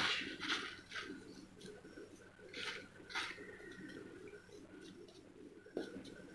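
Metal spatula scraping and pressing ferrous ammonium sulphate crystals on filter paper: a few faint, short scratches over low room noise.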